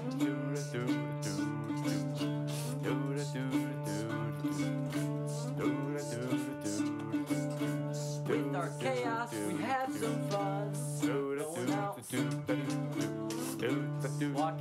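Instrumental passage of a song: plucked guitar notes over a steady held low note, with light percussion keeping a regular beat.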